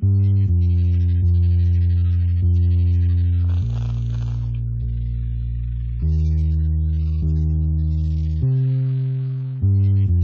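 IK Multimedia MODO Bass virtual electric bass playing a slow groove of held notes, changing pitch about once a second, with a brief scratchy string noise around the middle.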